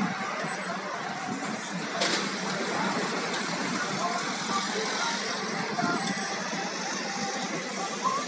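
Street traffic ambience: passing cars and scooters with people's voices in the background, and a sharp click about two seconds in.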